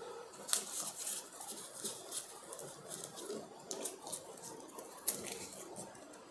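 Faint, irregular ticks and light rustles of thin wire leads being handled between the fingers.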